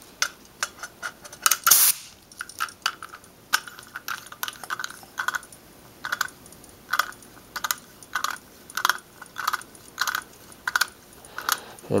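Air-hose quick coupler snapping onto a leak-down tester with a short hiss of air about two seconds in, then a run of light clicks, about two a second, as the pressure regulator knob is turned to bring the gauge up to 100 psi.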